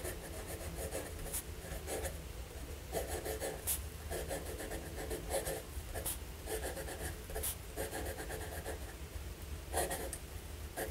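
Fine nib of a Waterman Allure Deluxe fountain pen writing on Rhodia pad paper. It gives a soft scratch with each stroke, in short runs as letters and words are formed, with brief pauses and light ticks between. The nib has light feedback but is not scratchy.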